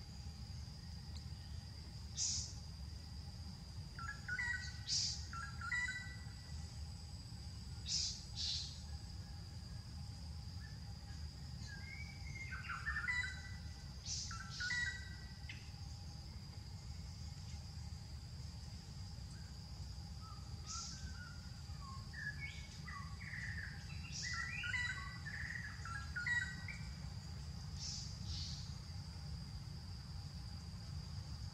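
Birds chirping and twittering in scattered short bursts, several times through the stretch, over a steady high-pitched tone and a low background rumble.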